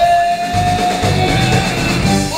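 Live rock band with a horn section playing an instrumental passage: one long note slides up into pitch at the start and is held for nearly two seconds over the band.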